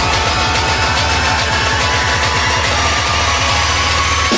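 Electronic dance music from a DJ mix: a dense, noisy build with rapid, even bass pulses and a thin tone rising slowly through it.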